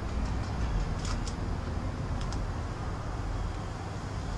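Steady low rumble of distant road traffic, with a few faint clicks in the first couple of seconds.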